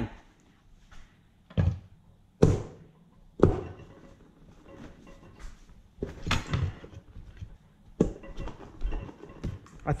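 Metal tappet cover of a Toyota 1UZ-FE V8 being handled and set onto a bare cylinder head: a handful of separate metal-on-metal knocks and clunks with small rattles between them, the loudest a few seconds in. The cover is being test-fitted.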